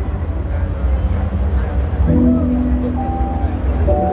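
Live concert music over an arena PA: a pulsing bass line, with sustained keyboard chords coming in about halfway through.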